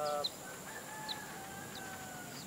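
A rooster crowing: a short call at the start, then one long held note lasting about a second and a half. Brief high chirps of small birds come and go.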